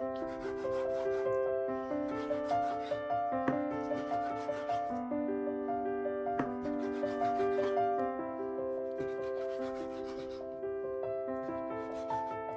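Large kitchen knife drawn through raw chicken breast onto a wooden cutting board: six long rasping slicing strokes, each about one to two seconds. Piano background music plays throughout.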